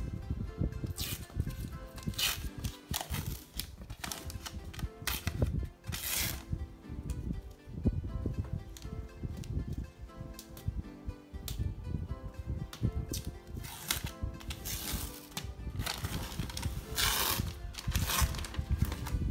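Background music, with several short bursts of noise from protective paper film being peeled off an acrylic sheet, the loudest near the end.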